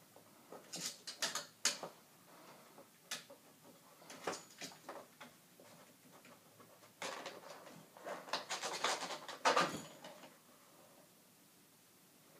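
A cat's claws scratching and scrabbling on a table lamp and its lampshade as she climbs it, a string of irregular scratches, taps and rustles, densest from about seven to ten seconds in.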